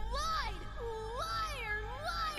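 Cartoon character's high, whiny voice crying out 'You lied!' and a drawn-out 'Liar!', heard as two long wails that rise and fall in pitch, with background score underneath.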